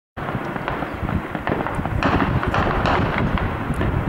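Heavy gunfire: a dense run of rapid, overlapping shots and cracks.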